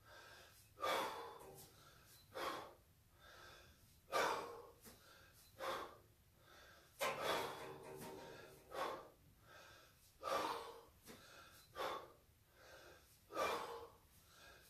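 A man's sharp, forceful breaths during kettlebell snatches, about one every second and a half, paced to the swings and lockouts. The pace is that of hard exertion in a sustained set with a 24 kg kettlebell.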